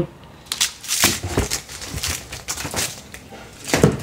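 Shoes in plastic wrapping and cardboard boxes being handled: irregular crinkling rustles and light clicks, the loudest just before the end.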